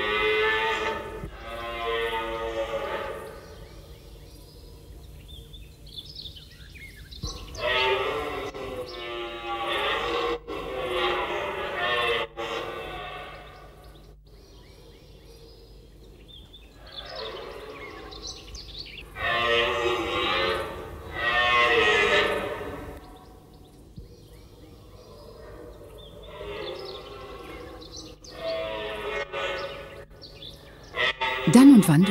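Red deer stag roaring during the rut, a series of long, loud roars several seconds apart: the stag's territorial call.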